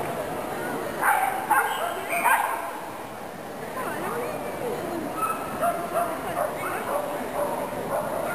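Dog barking: a quick run of loud barks about a second in, then fainter barking over a background of voices in a large hall.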